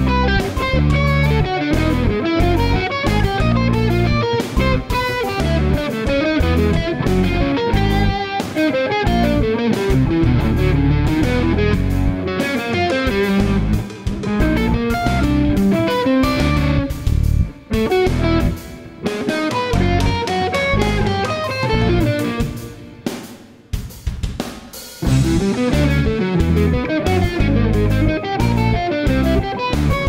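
Electric guitar solo on a Suhr Modern, quick melodic lines played over a backing track with drums. The accompaniment thins out and gets quieter for several seconds past the middle, then comes back in full.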